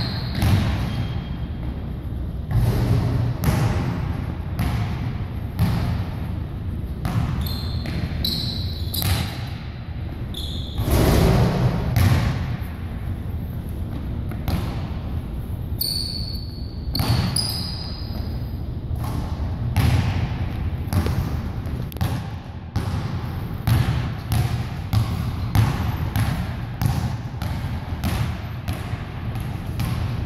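A basketball being dribbled repeatedly on a hardwood gym floor, about two bounces a second, echoing in a large hall. A few short, high sneaker squeaks come in between the bounces.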